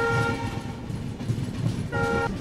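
Train's locomotive horn: a long multi-tone blast that cuts off about half a second in, then a short second blast at the very end. The low rumble of the coaches running on the track goes on underneath.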